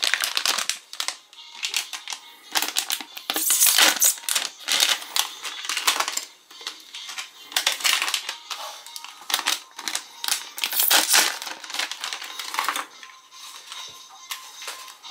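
Plastic sweet-bag packaging crinkling and rustling in irregular bursts as it is handled and opened, with background music underneath.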